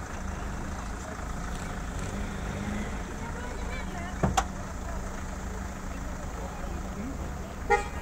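Car horn giving a short toot near the end, over the steady low hum of idling vehicle engines, with a single sharp knock about halfway through.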